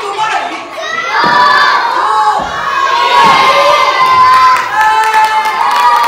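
A hall full of children shouting and cheering together, many high voices in long calls that swell about a second in and keep going.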